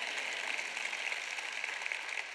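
Large audience applauding steadily, a dense even patter of many hands clapping.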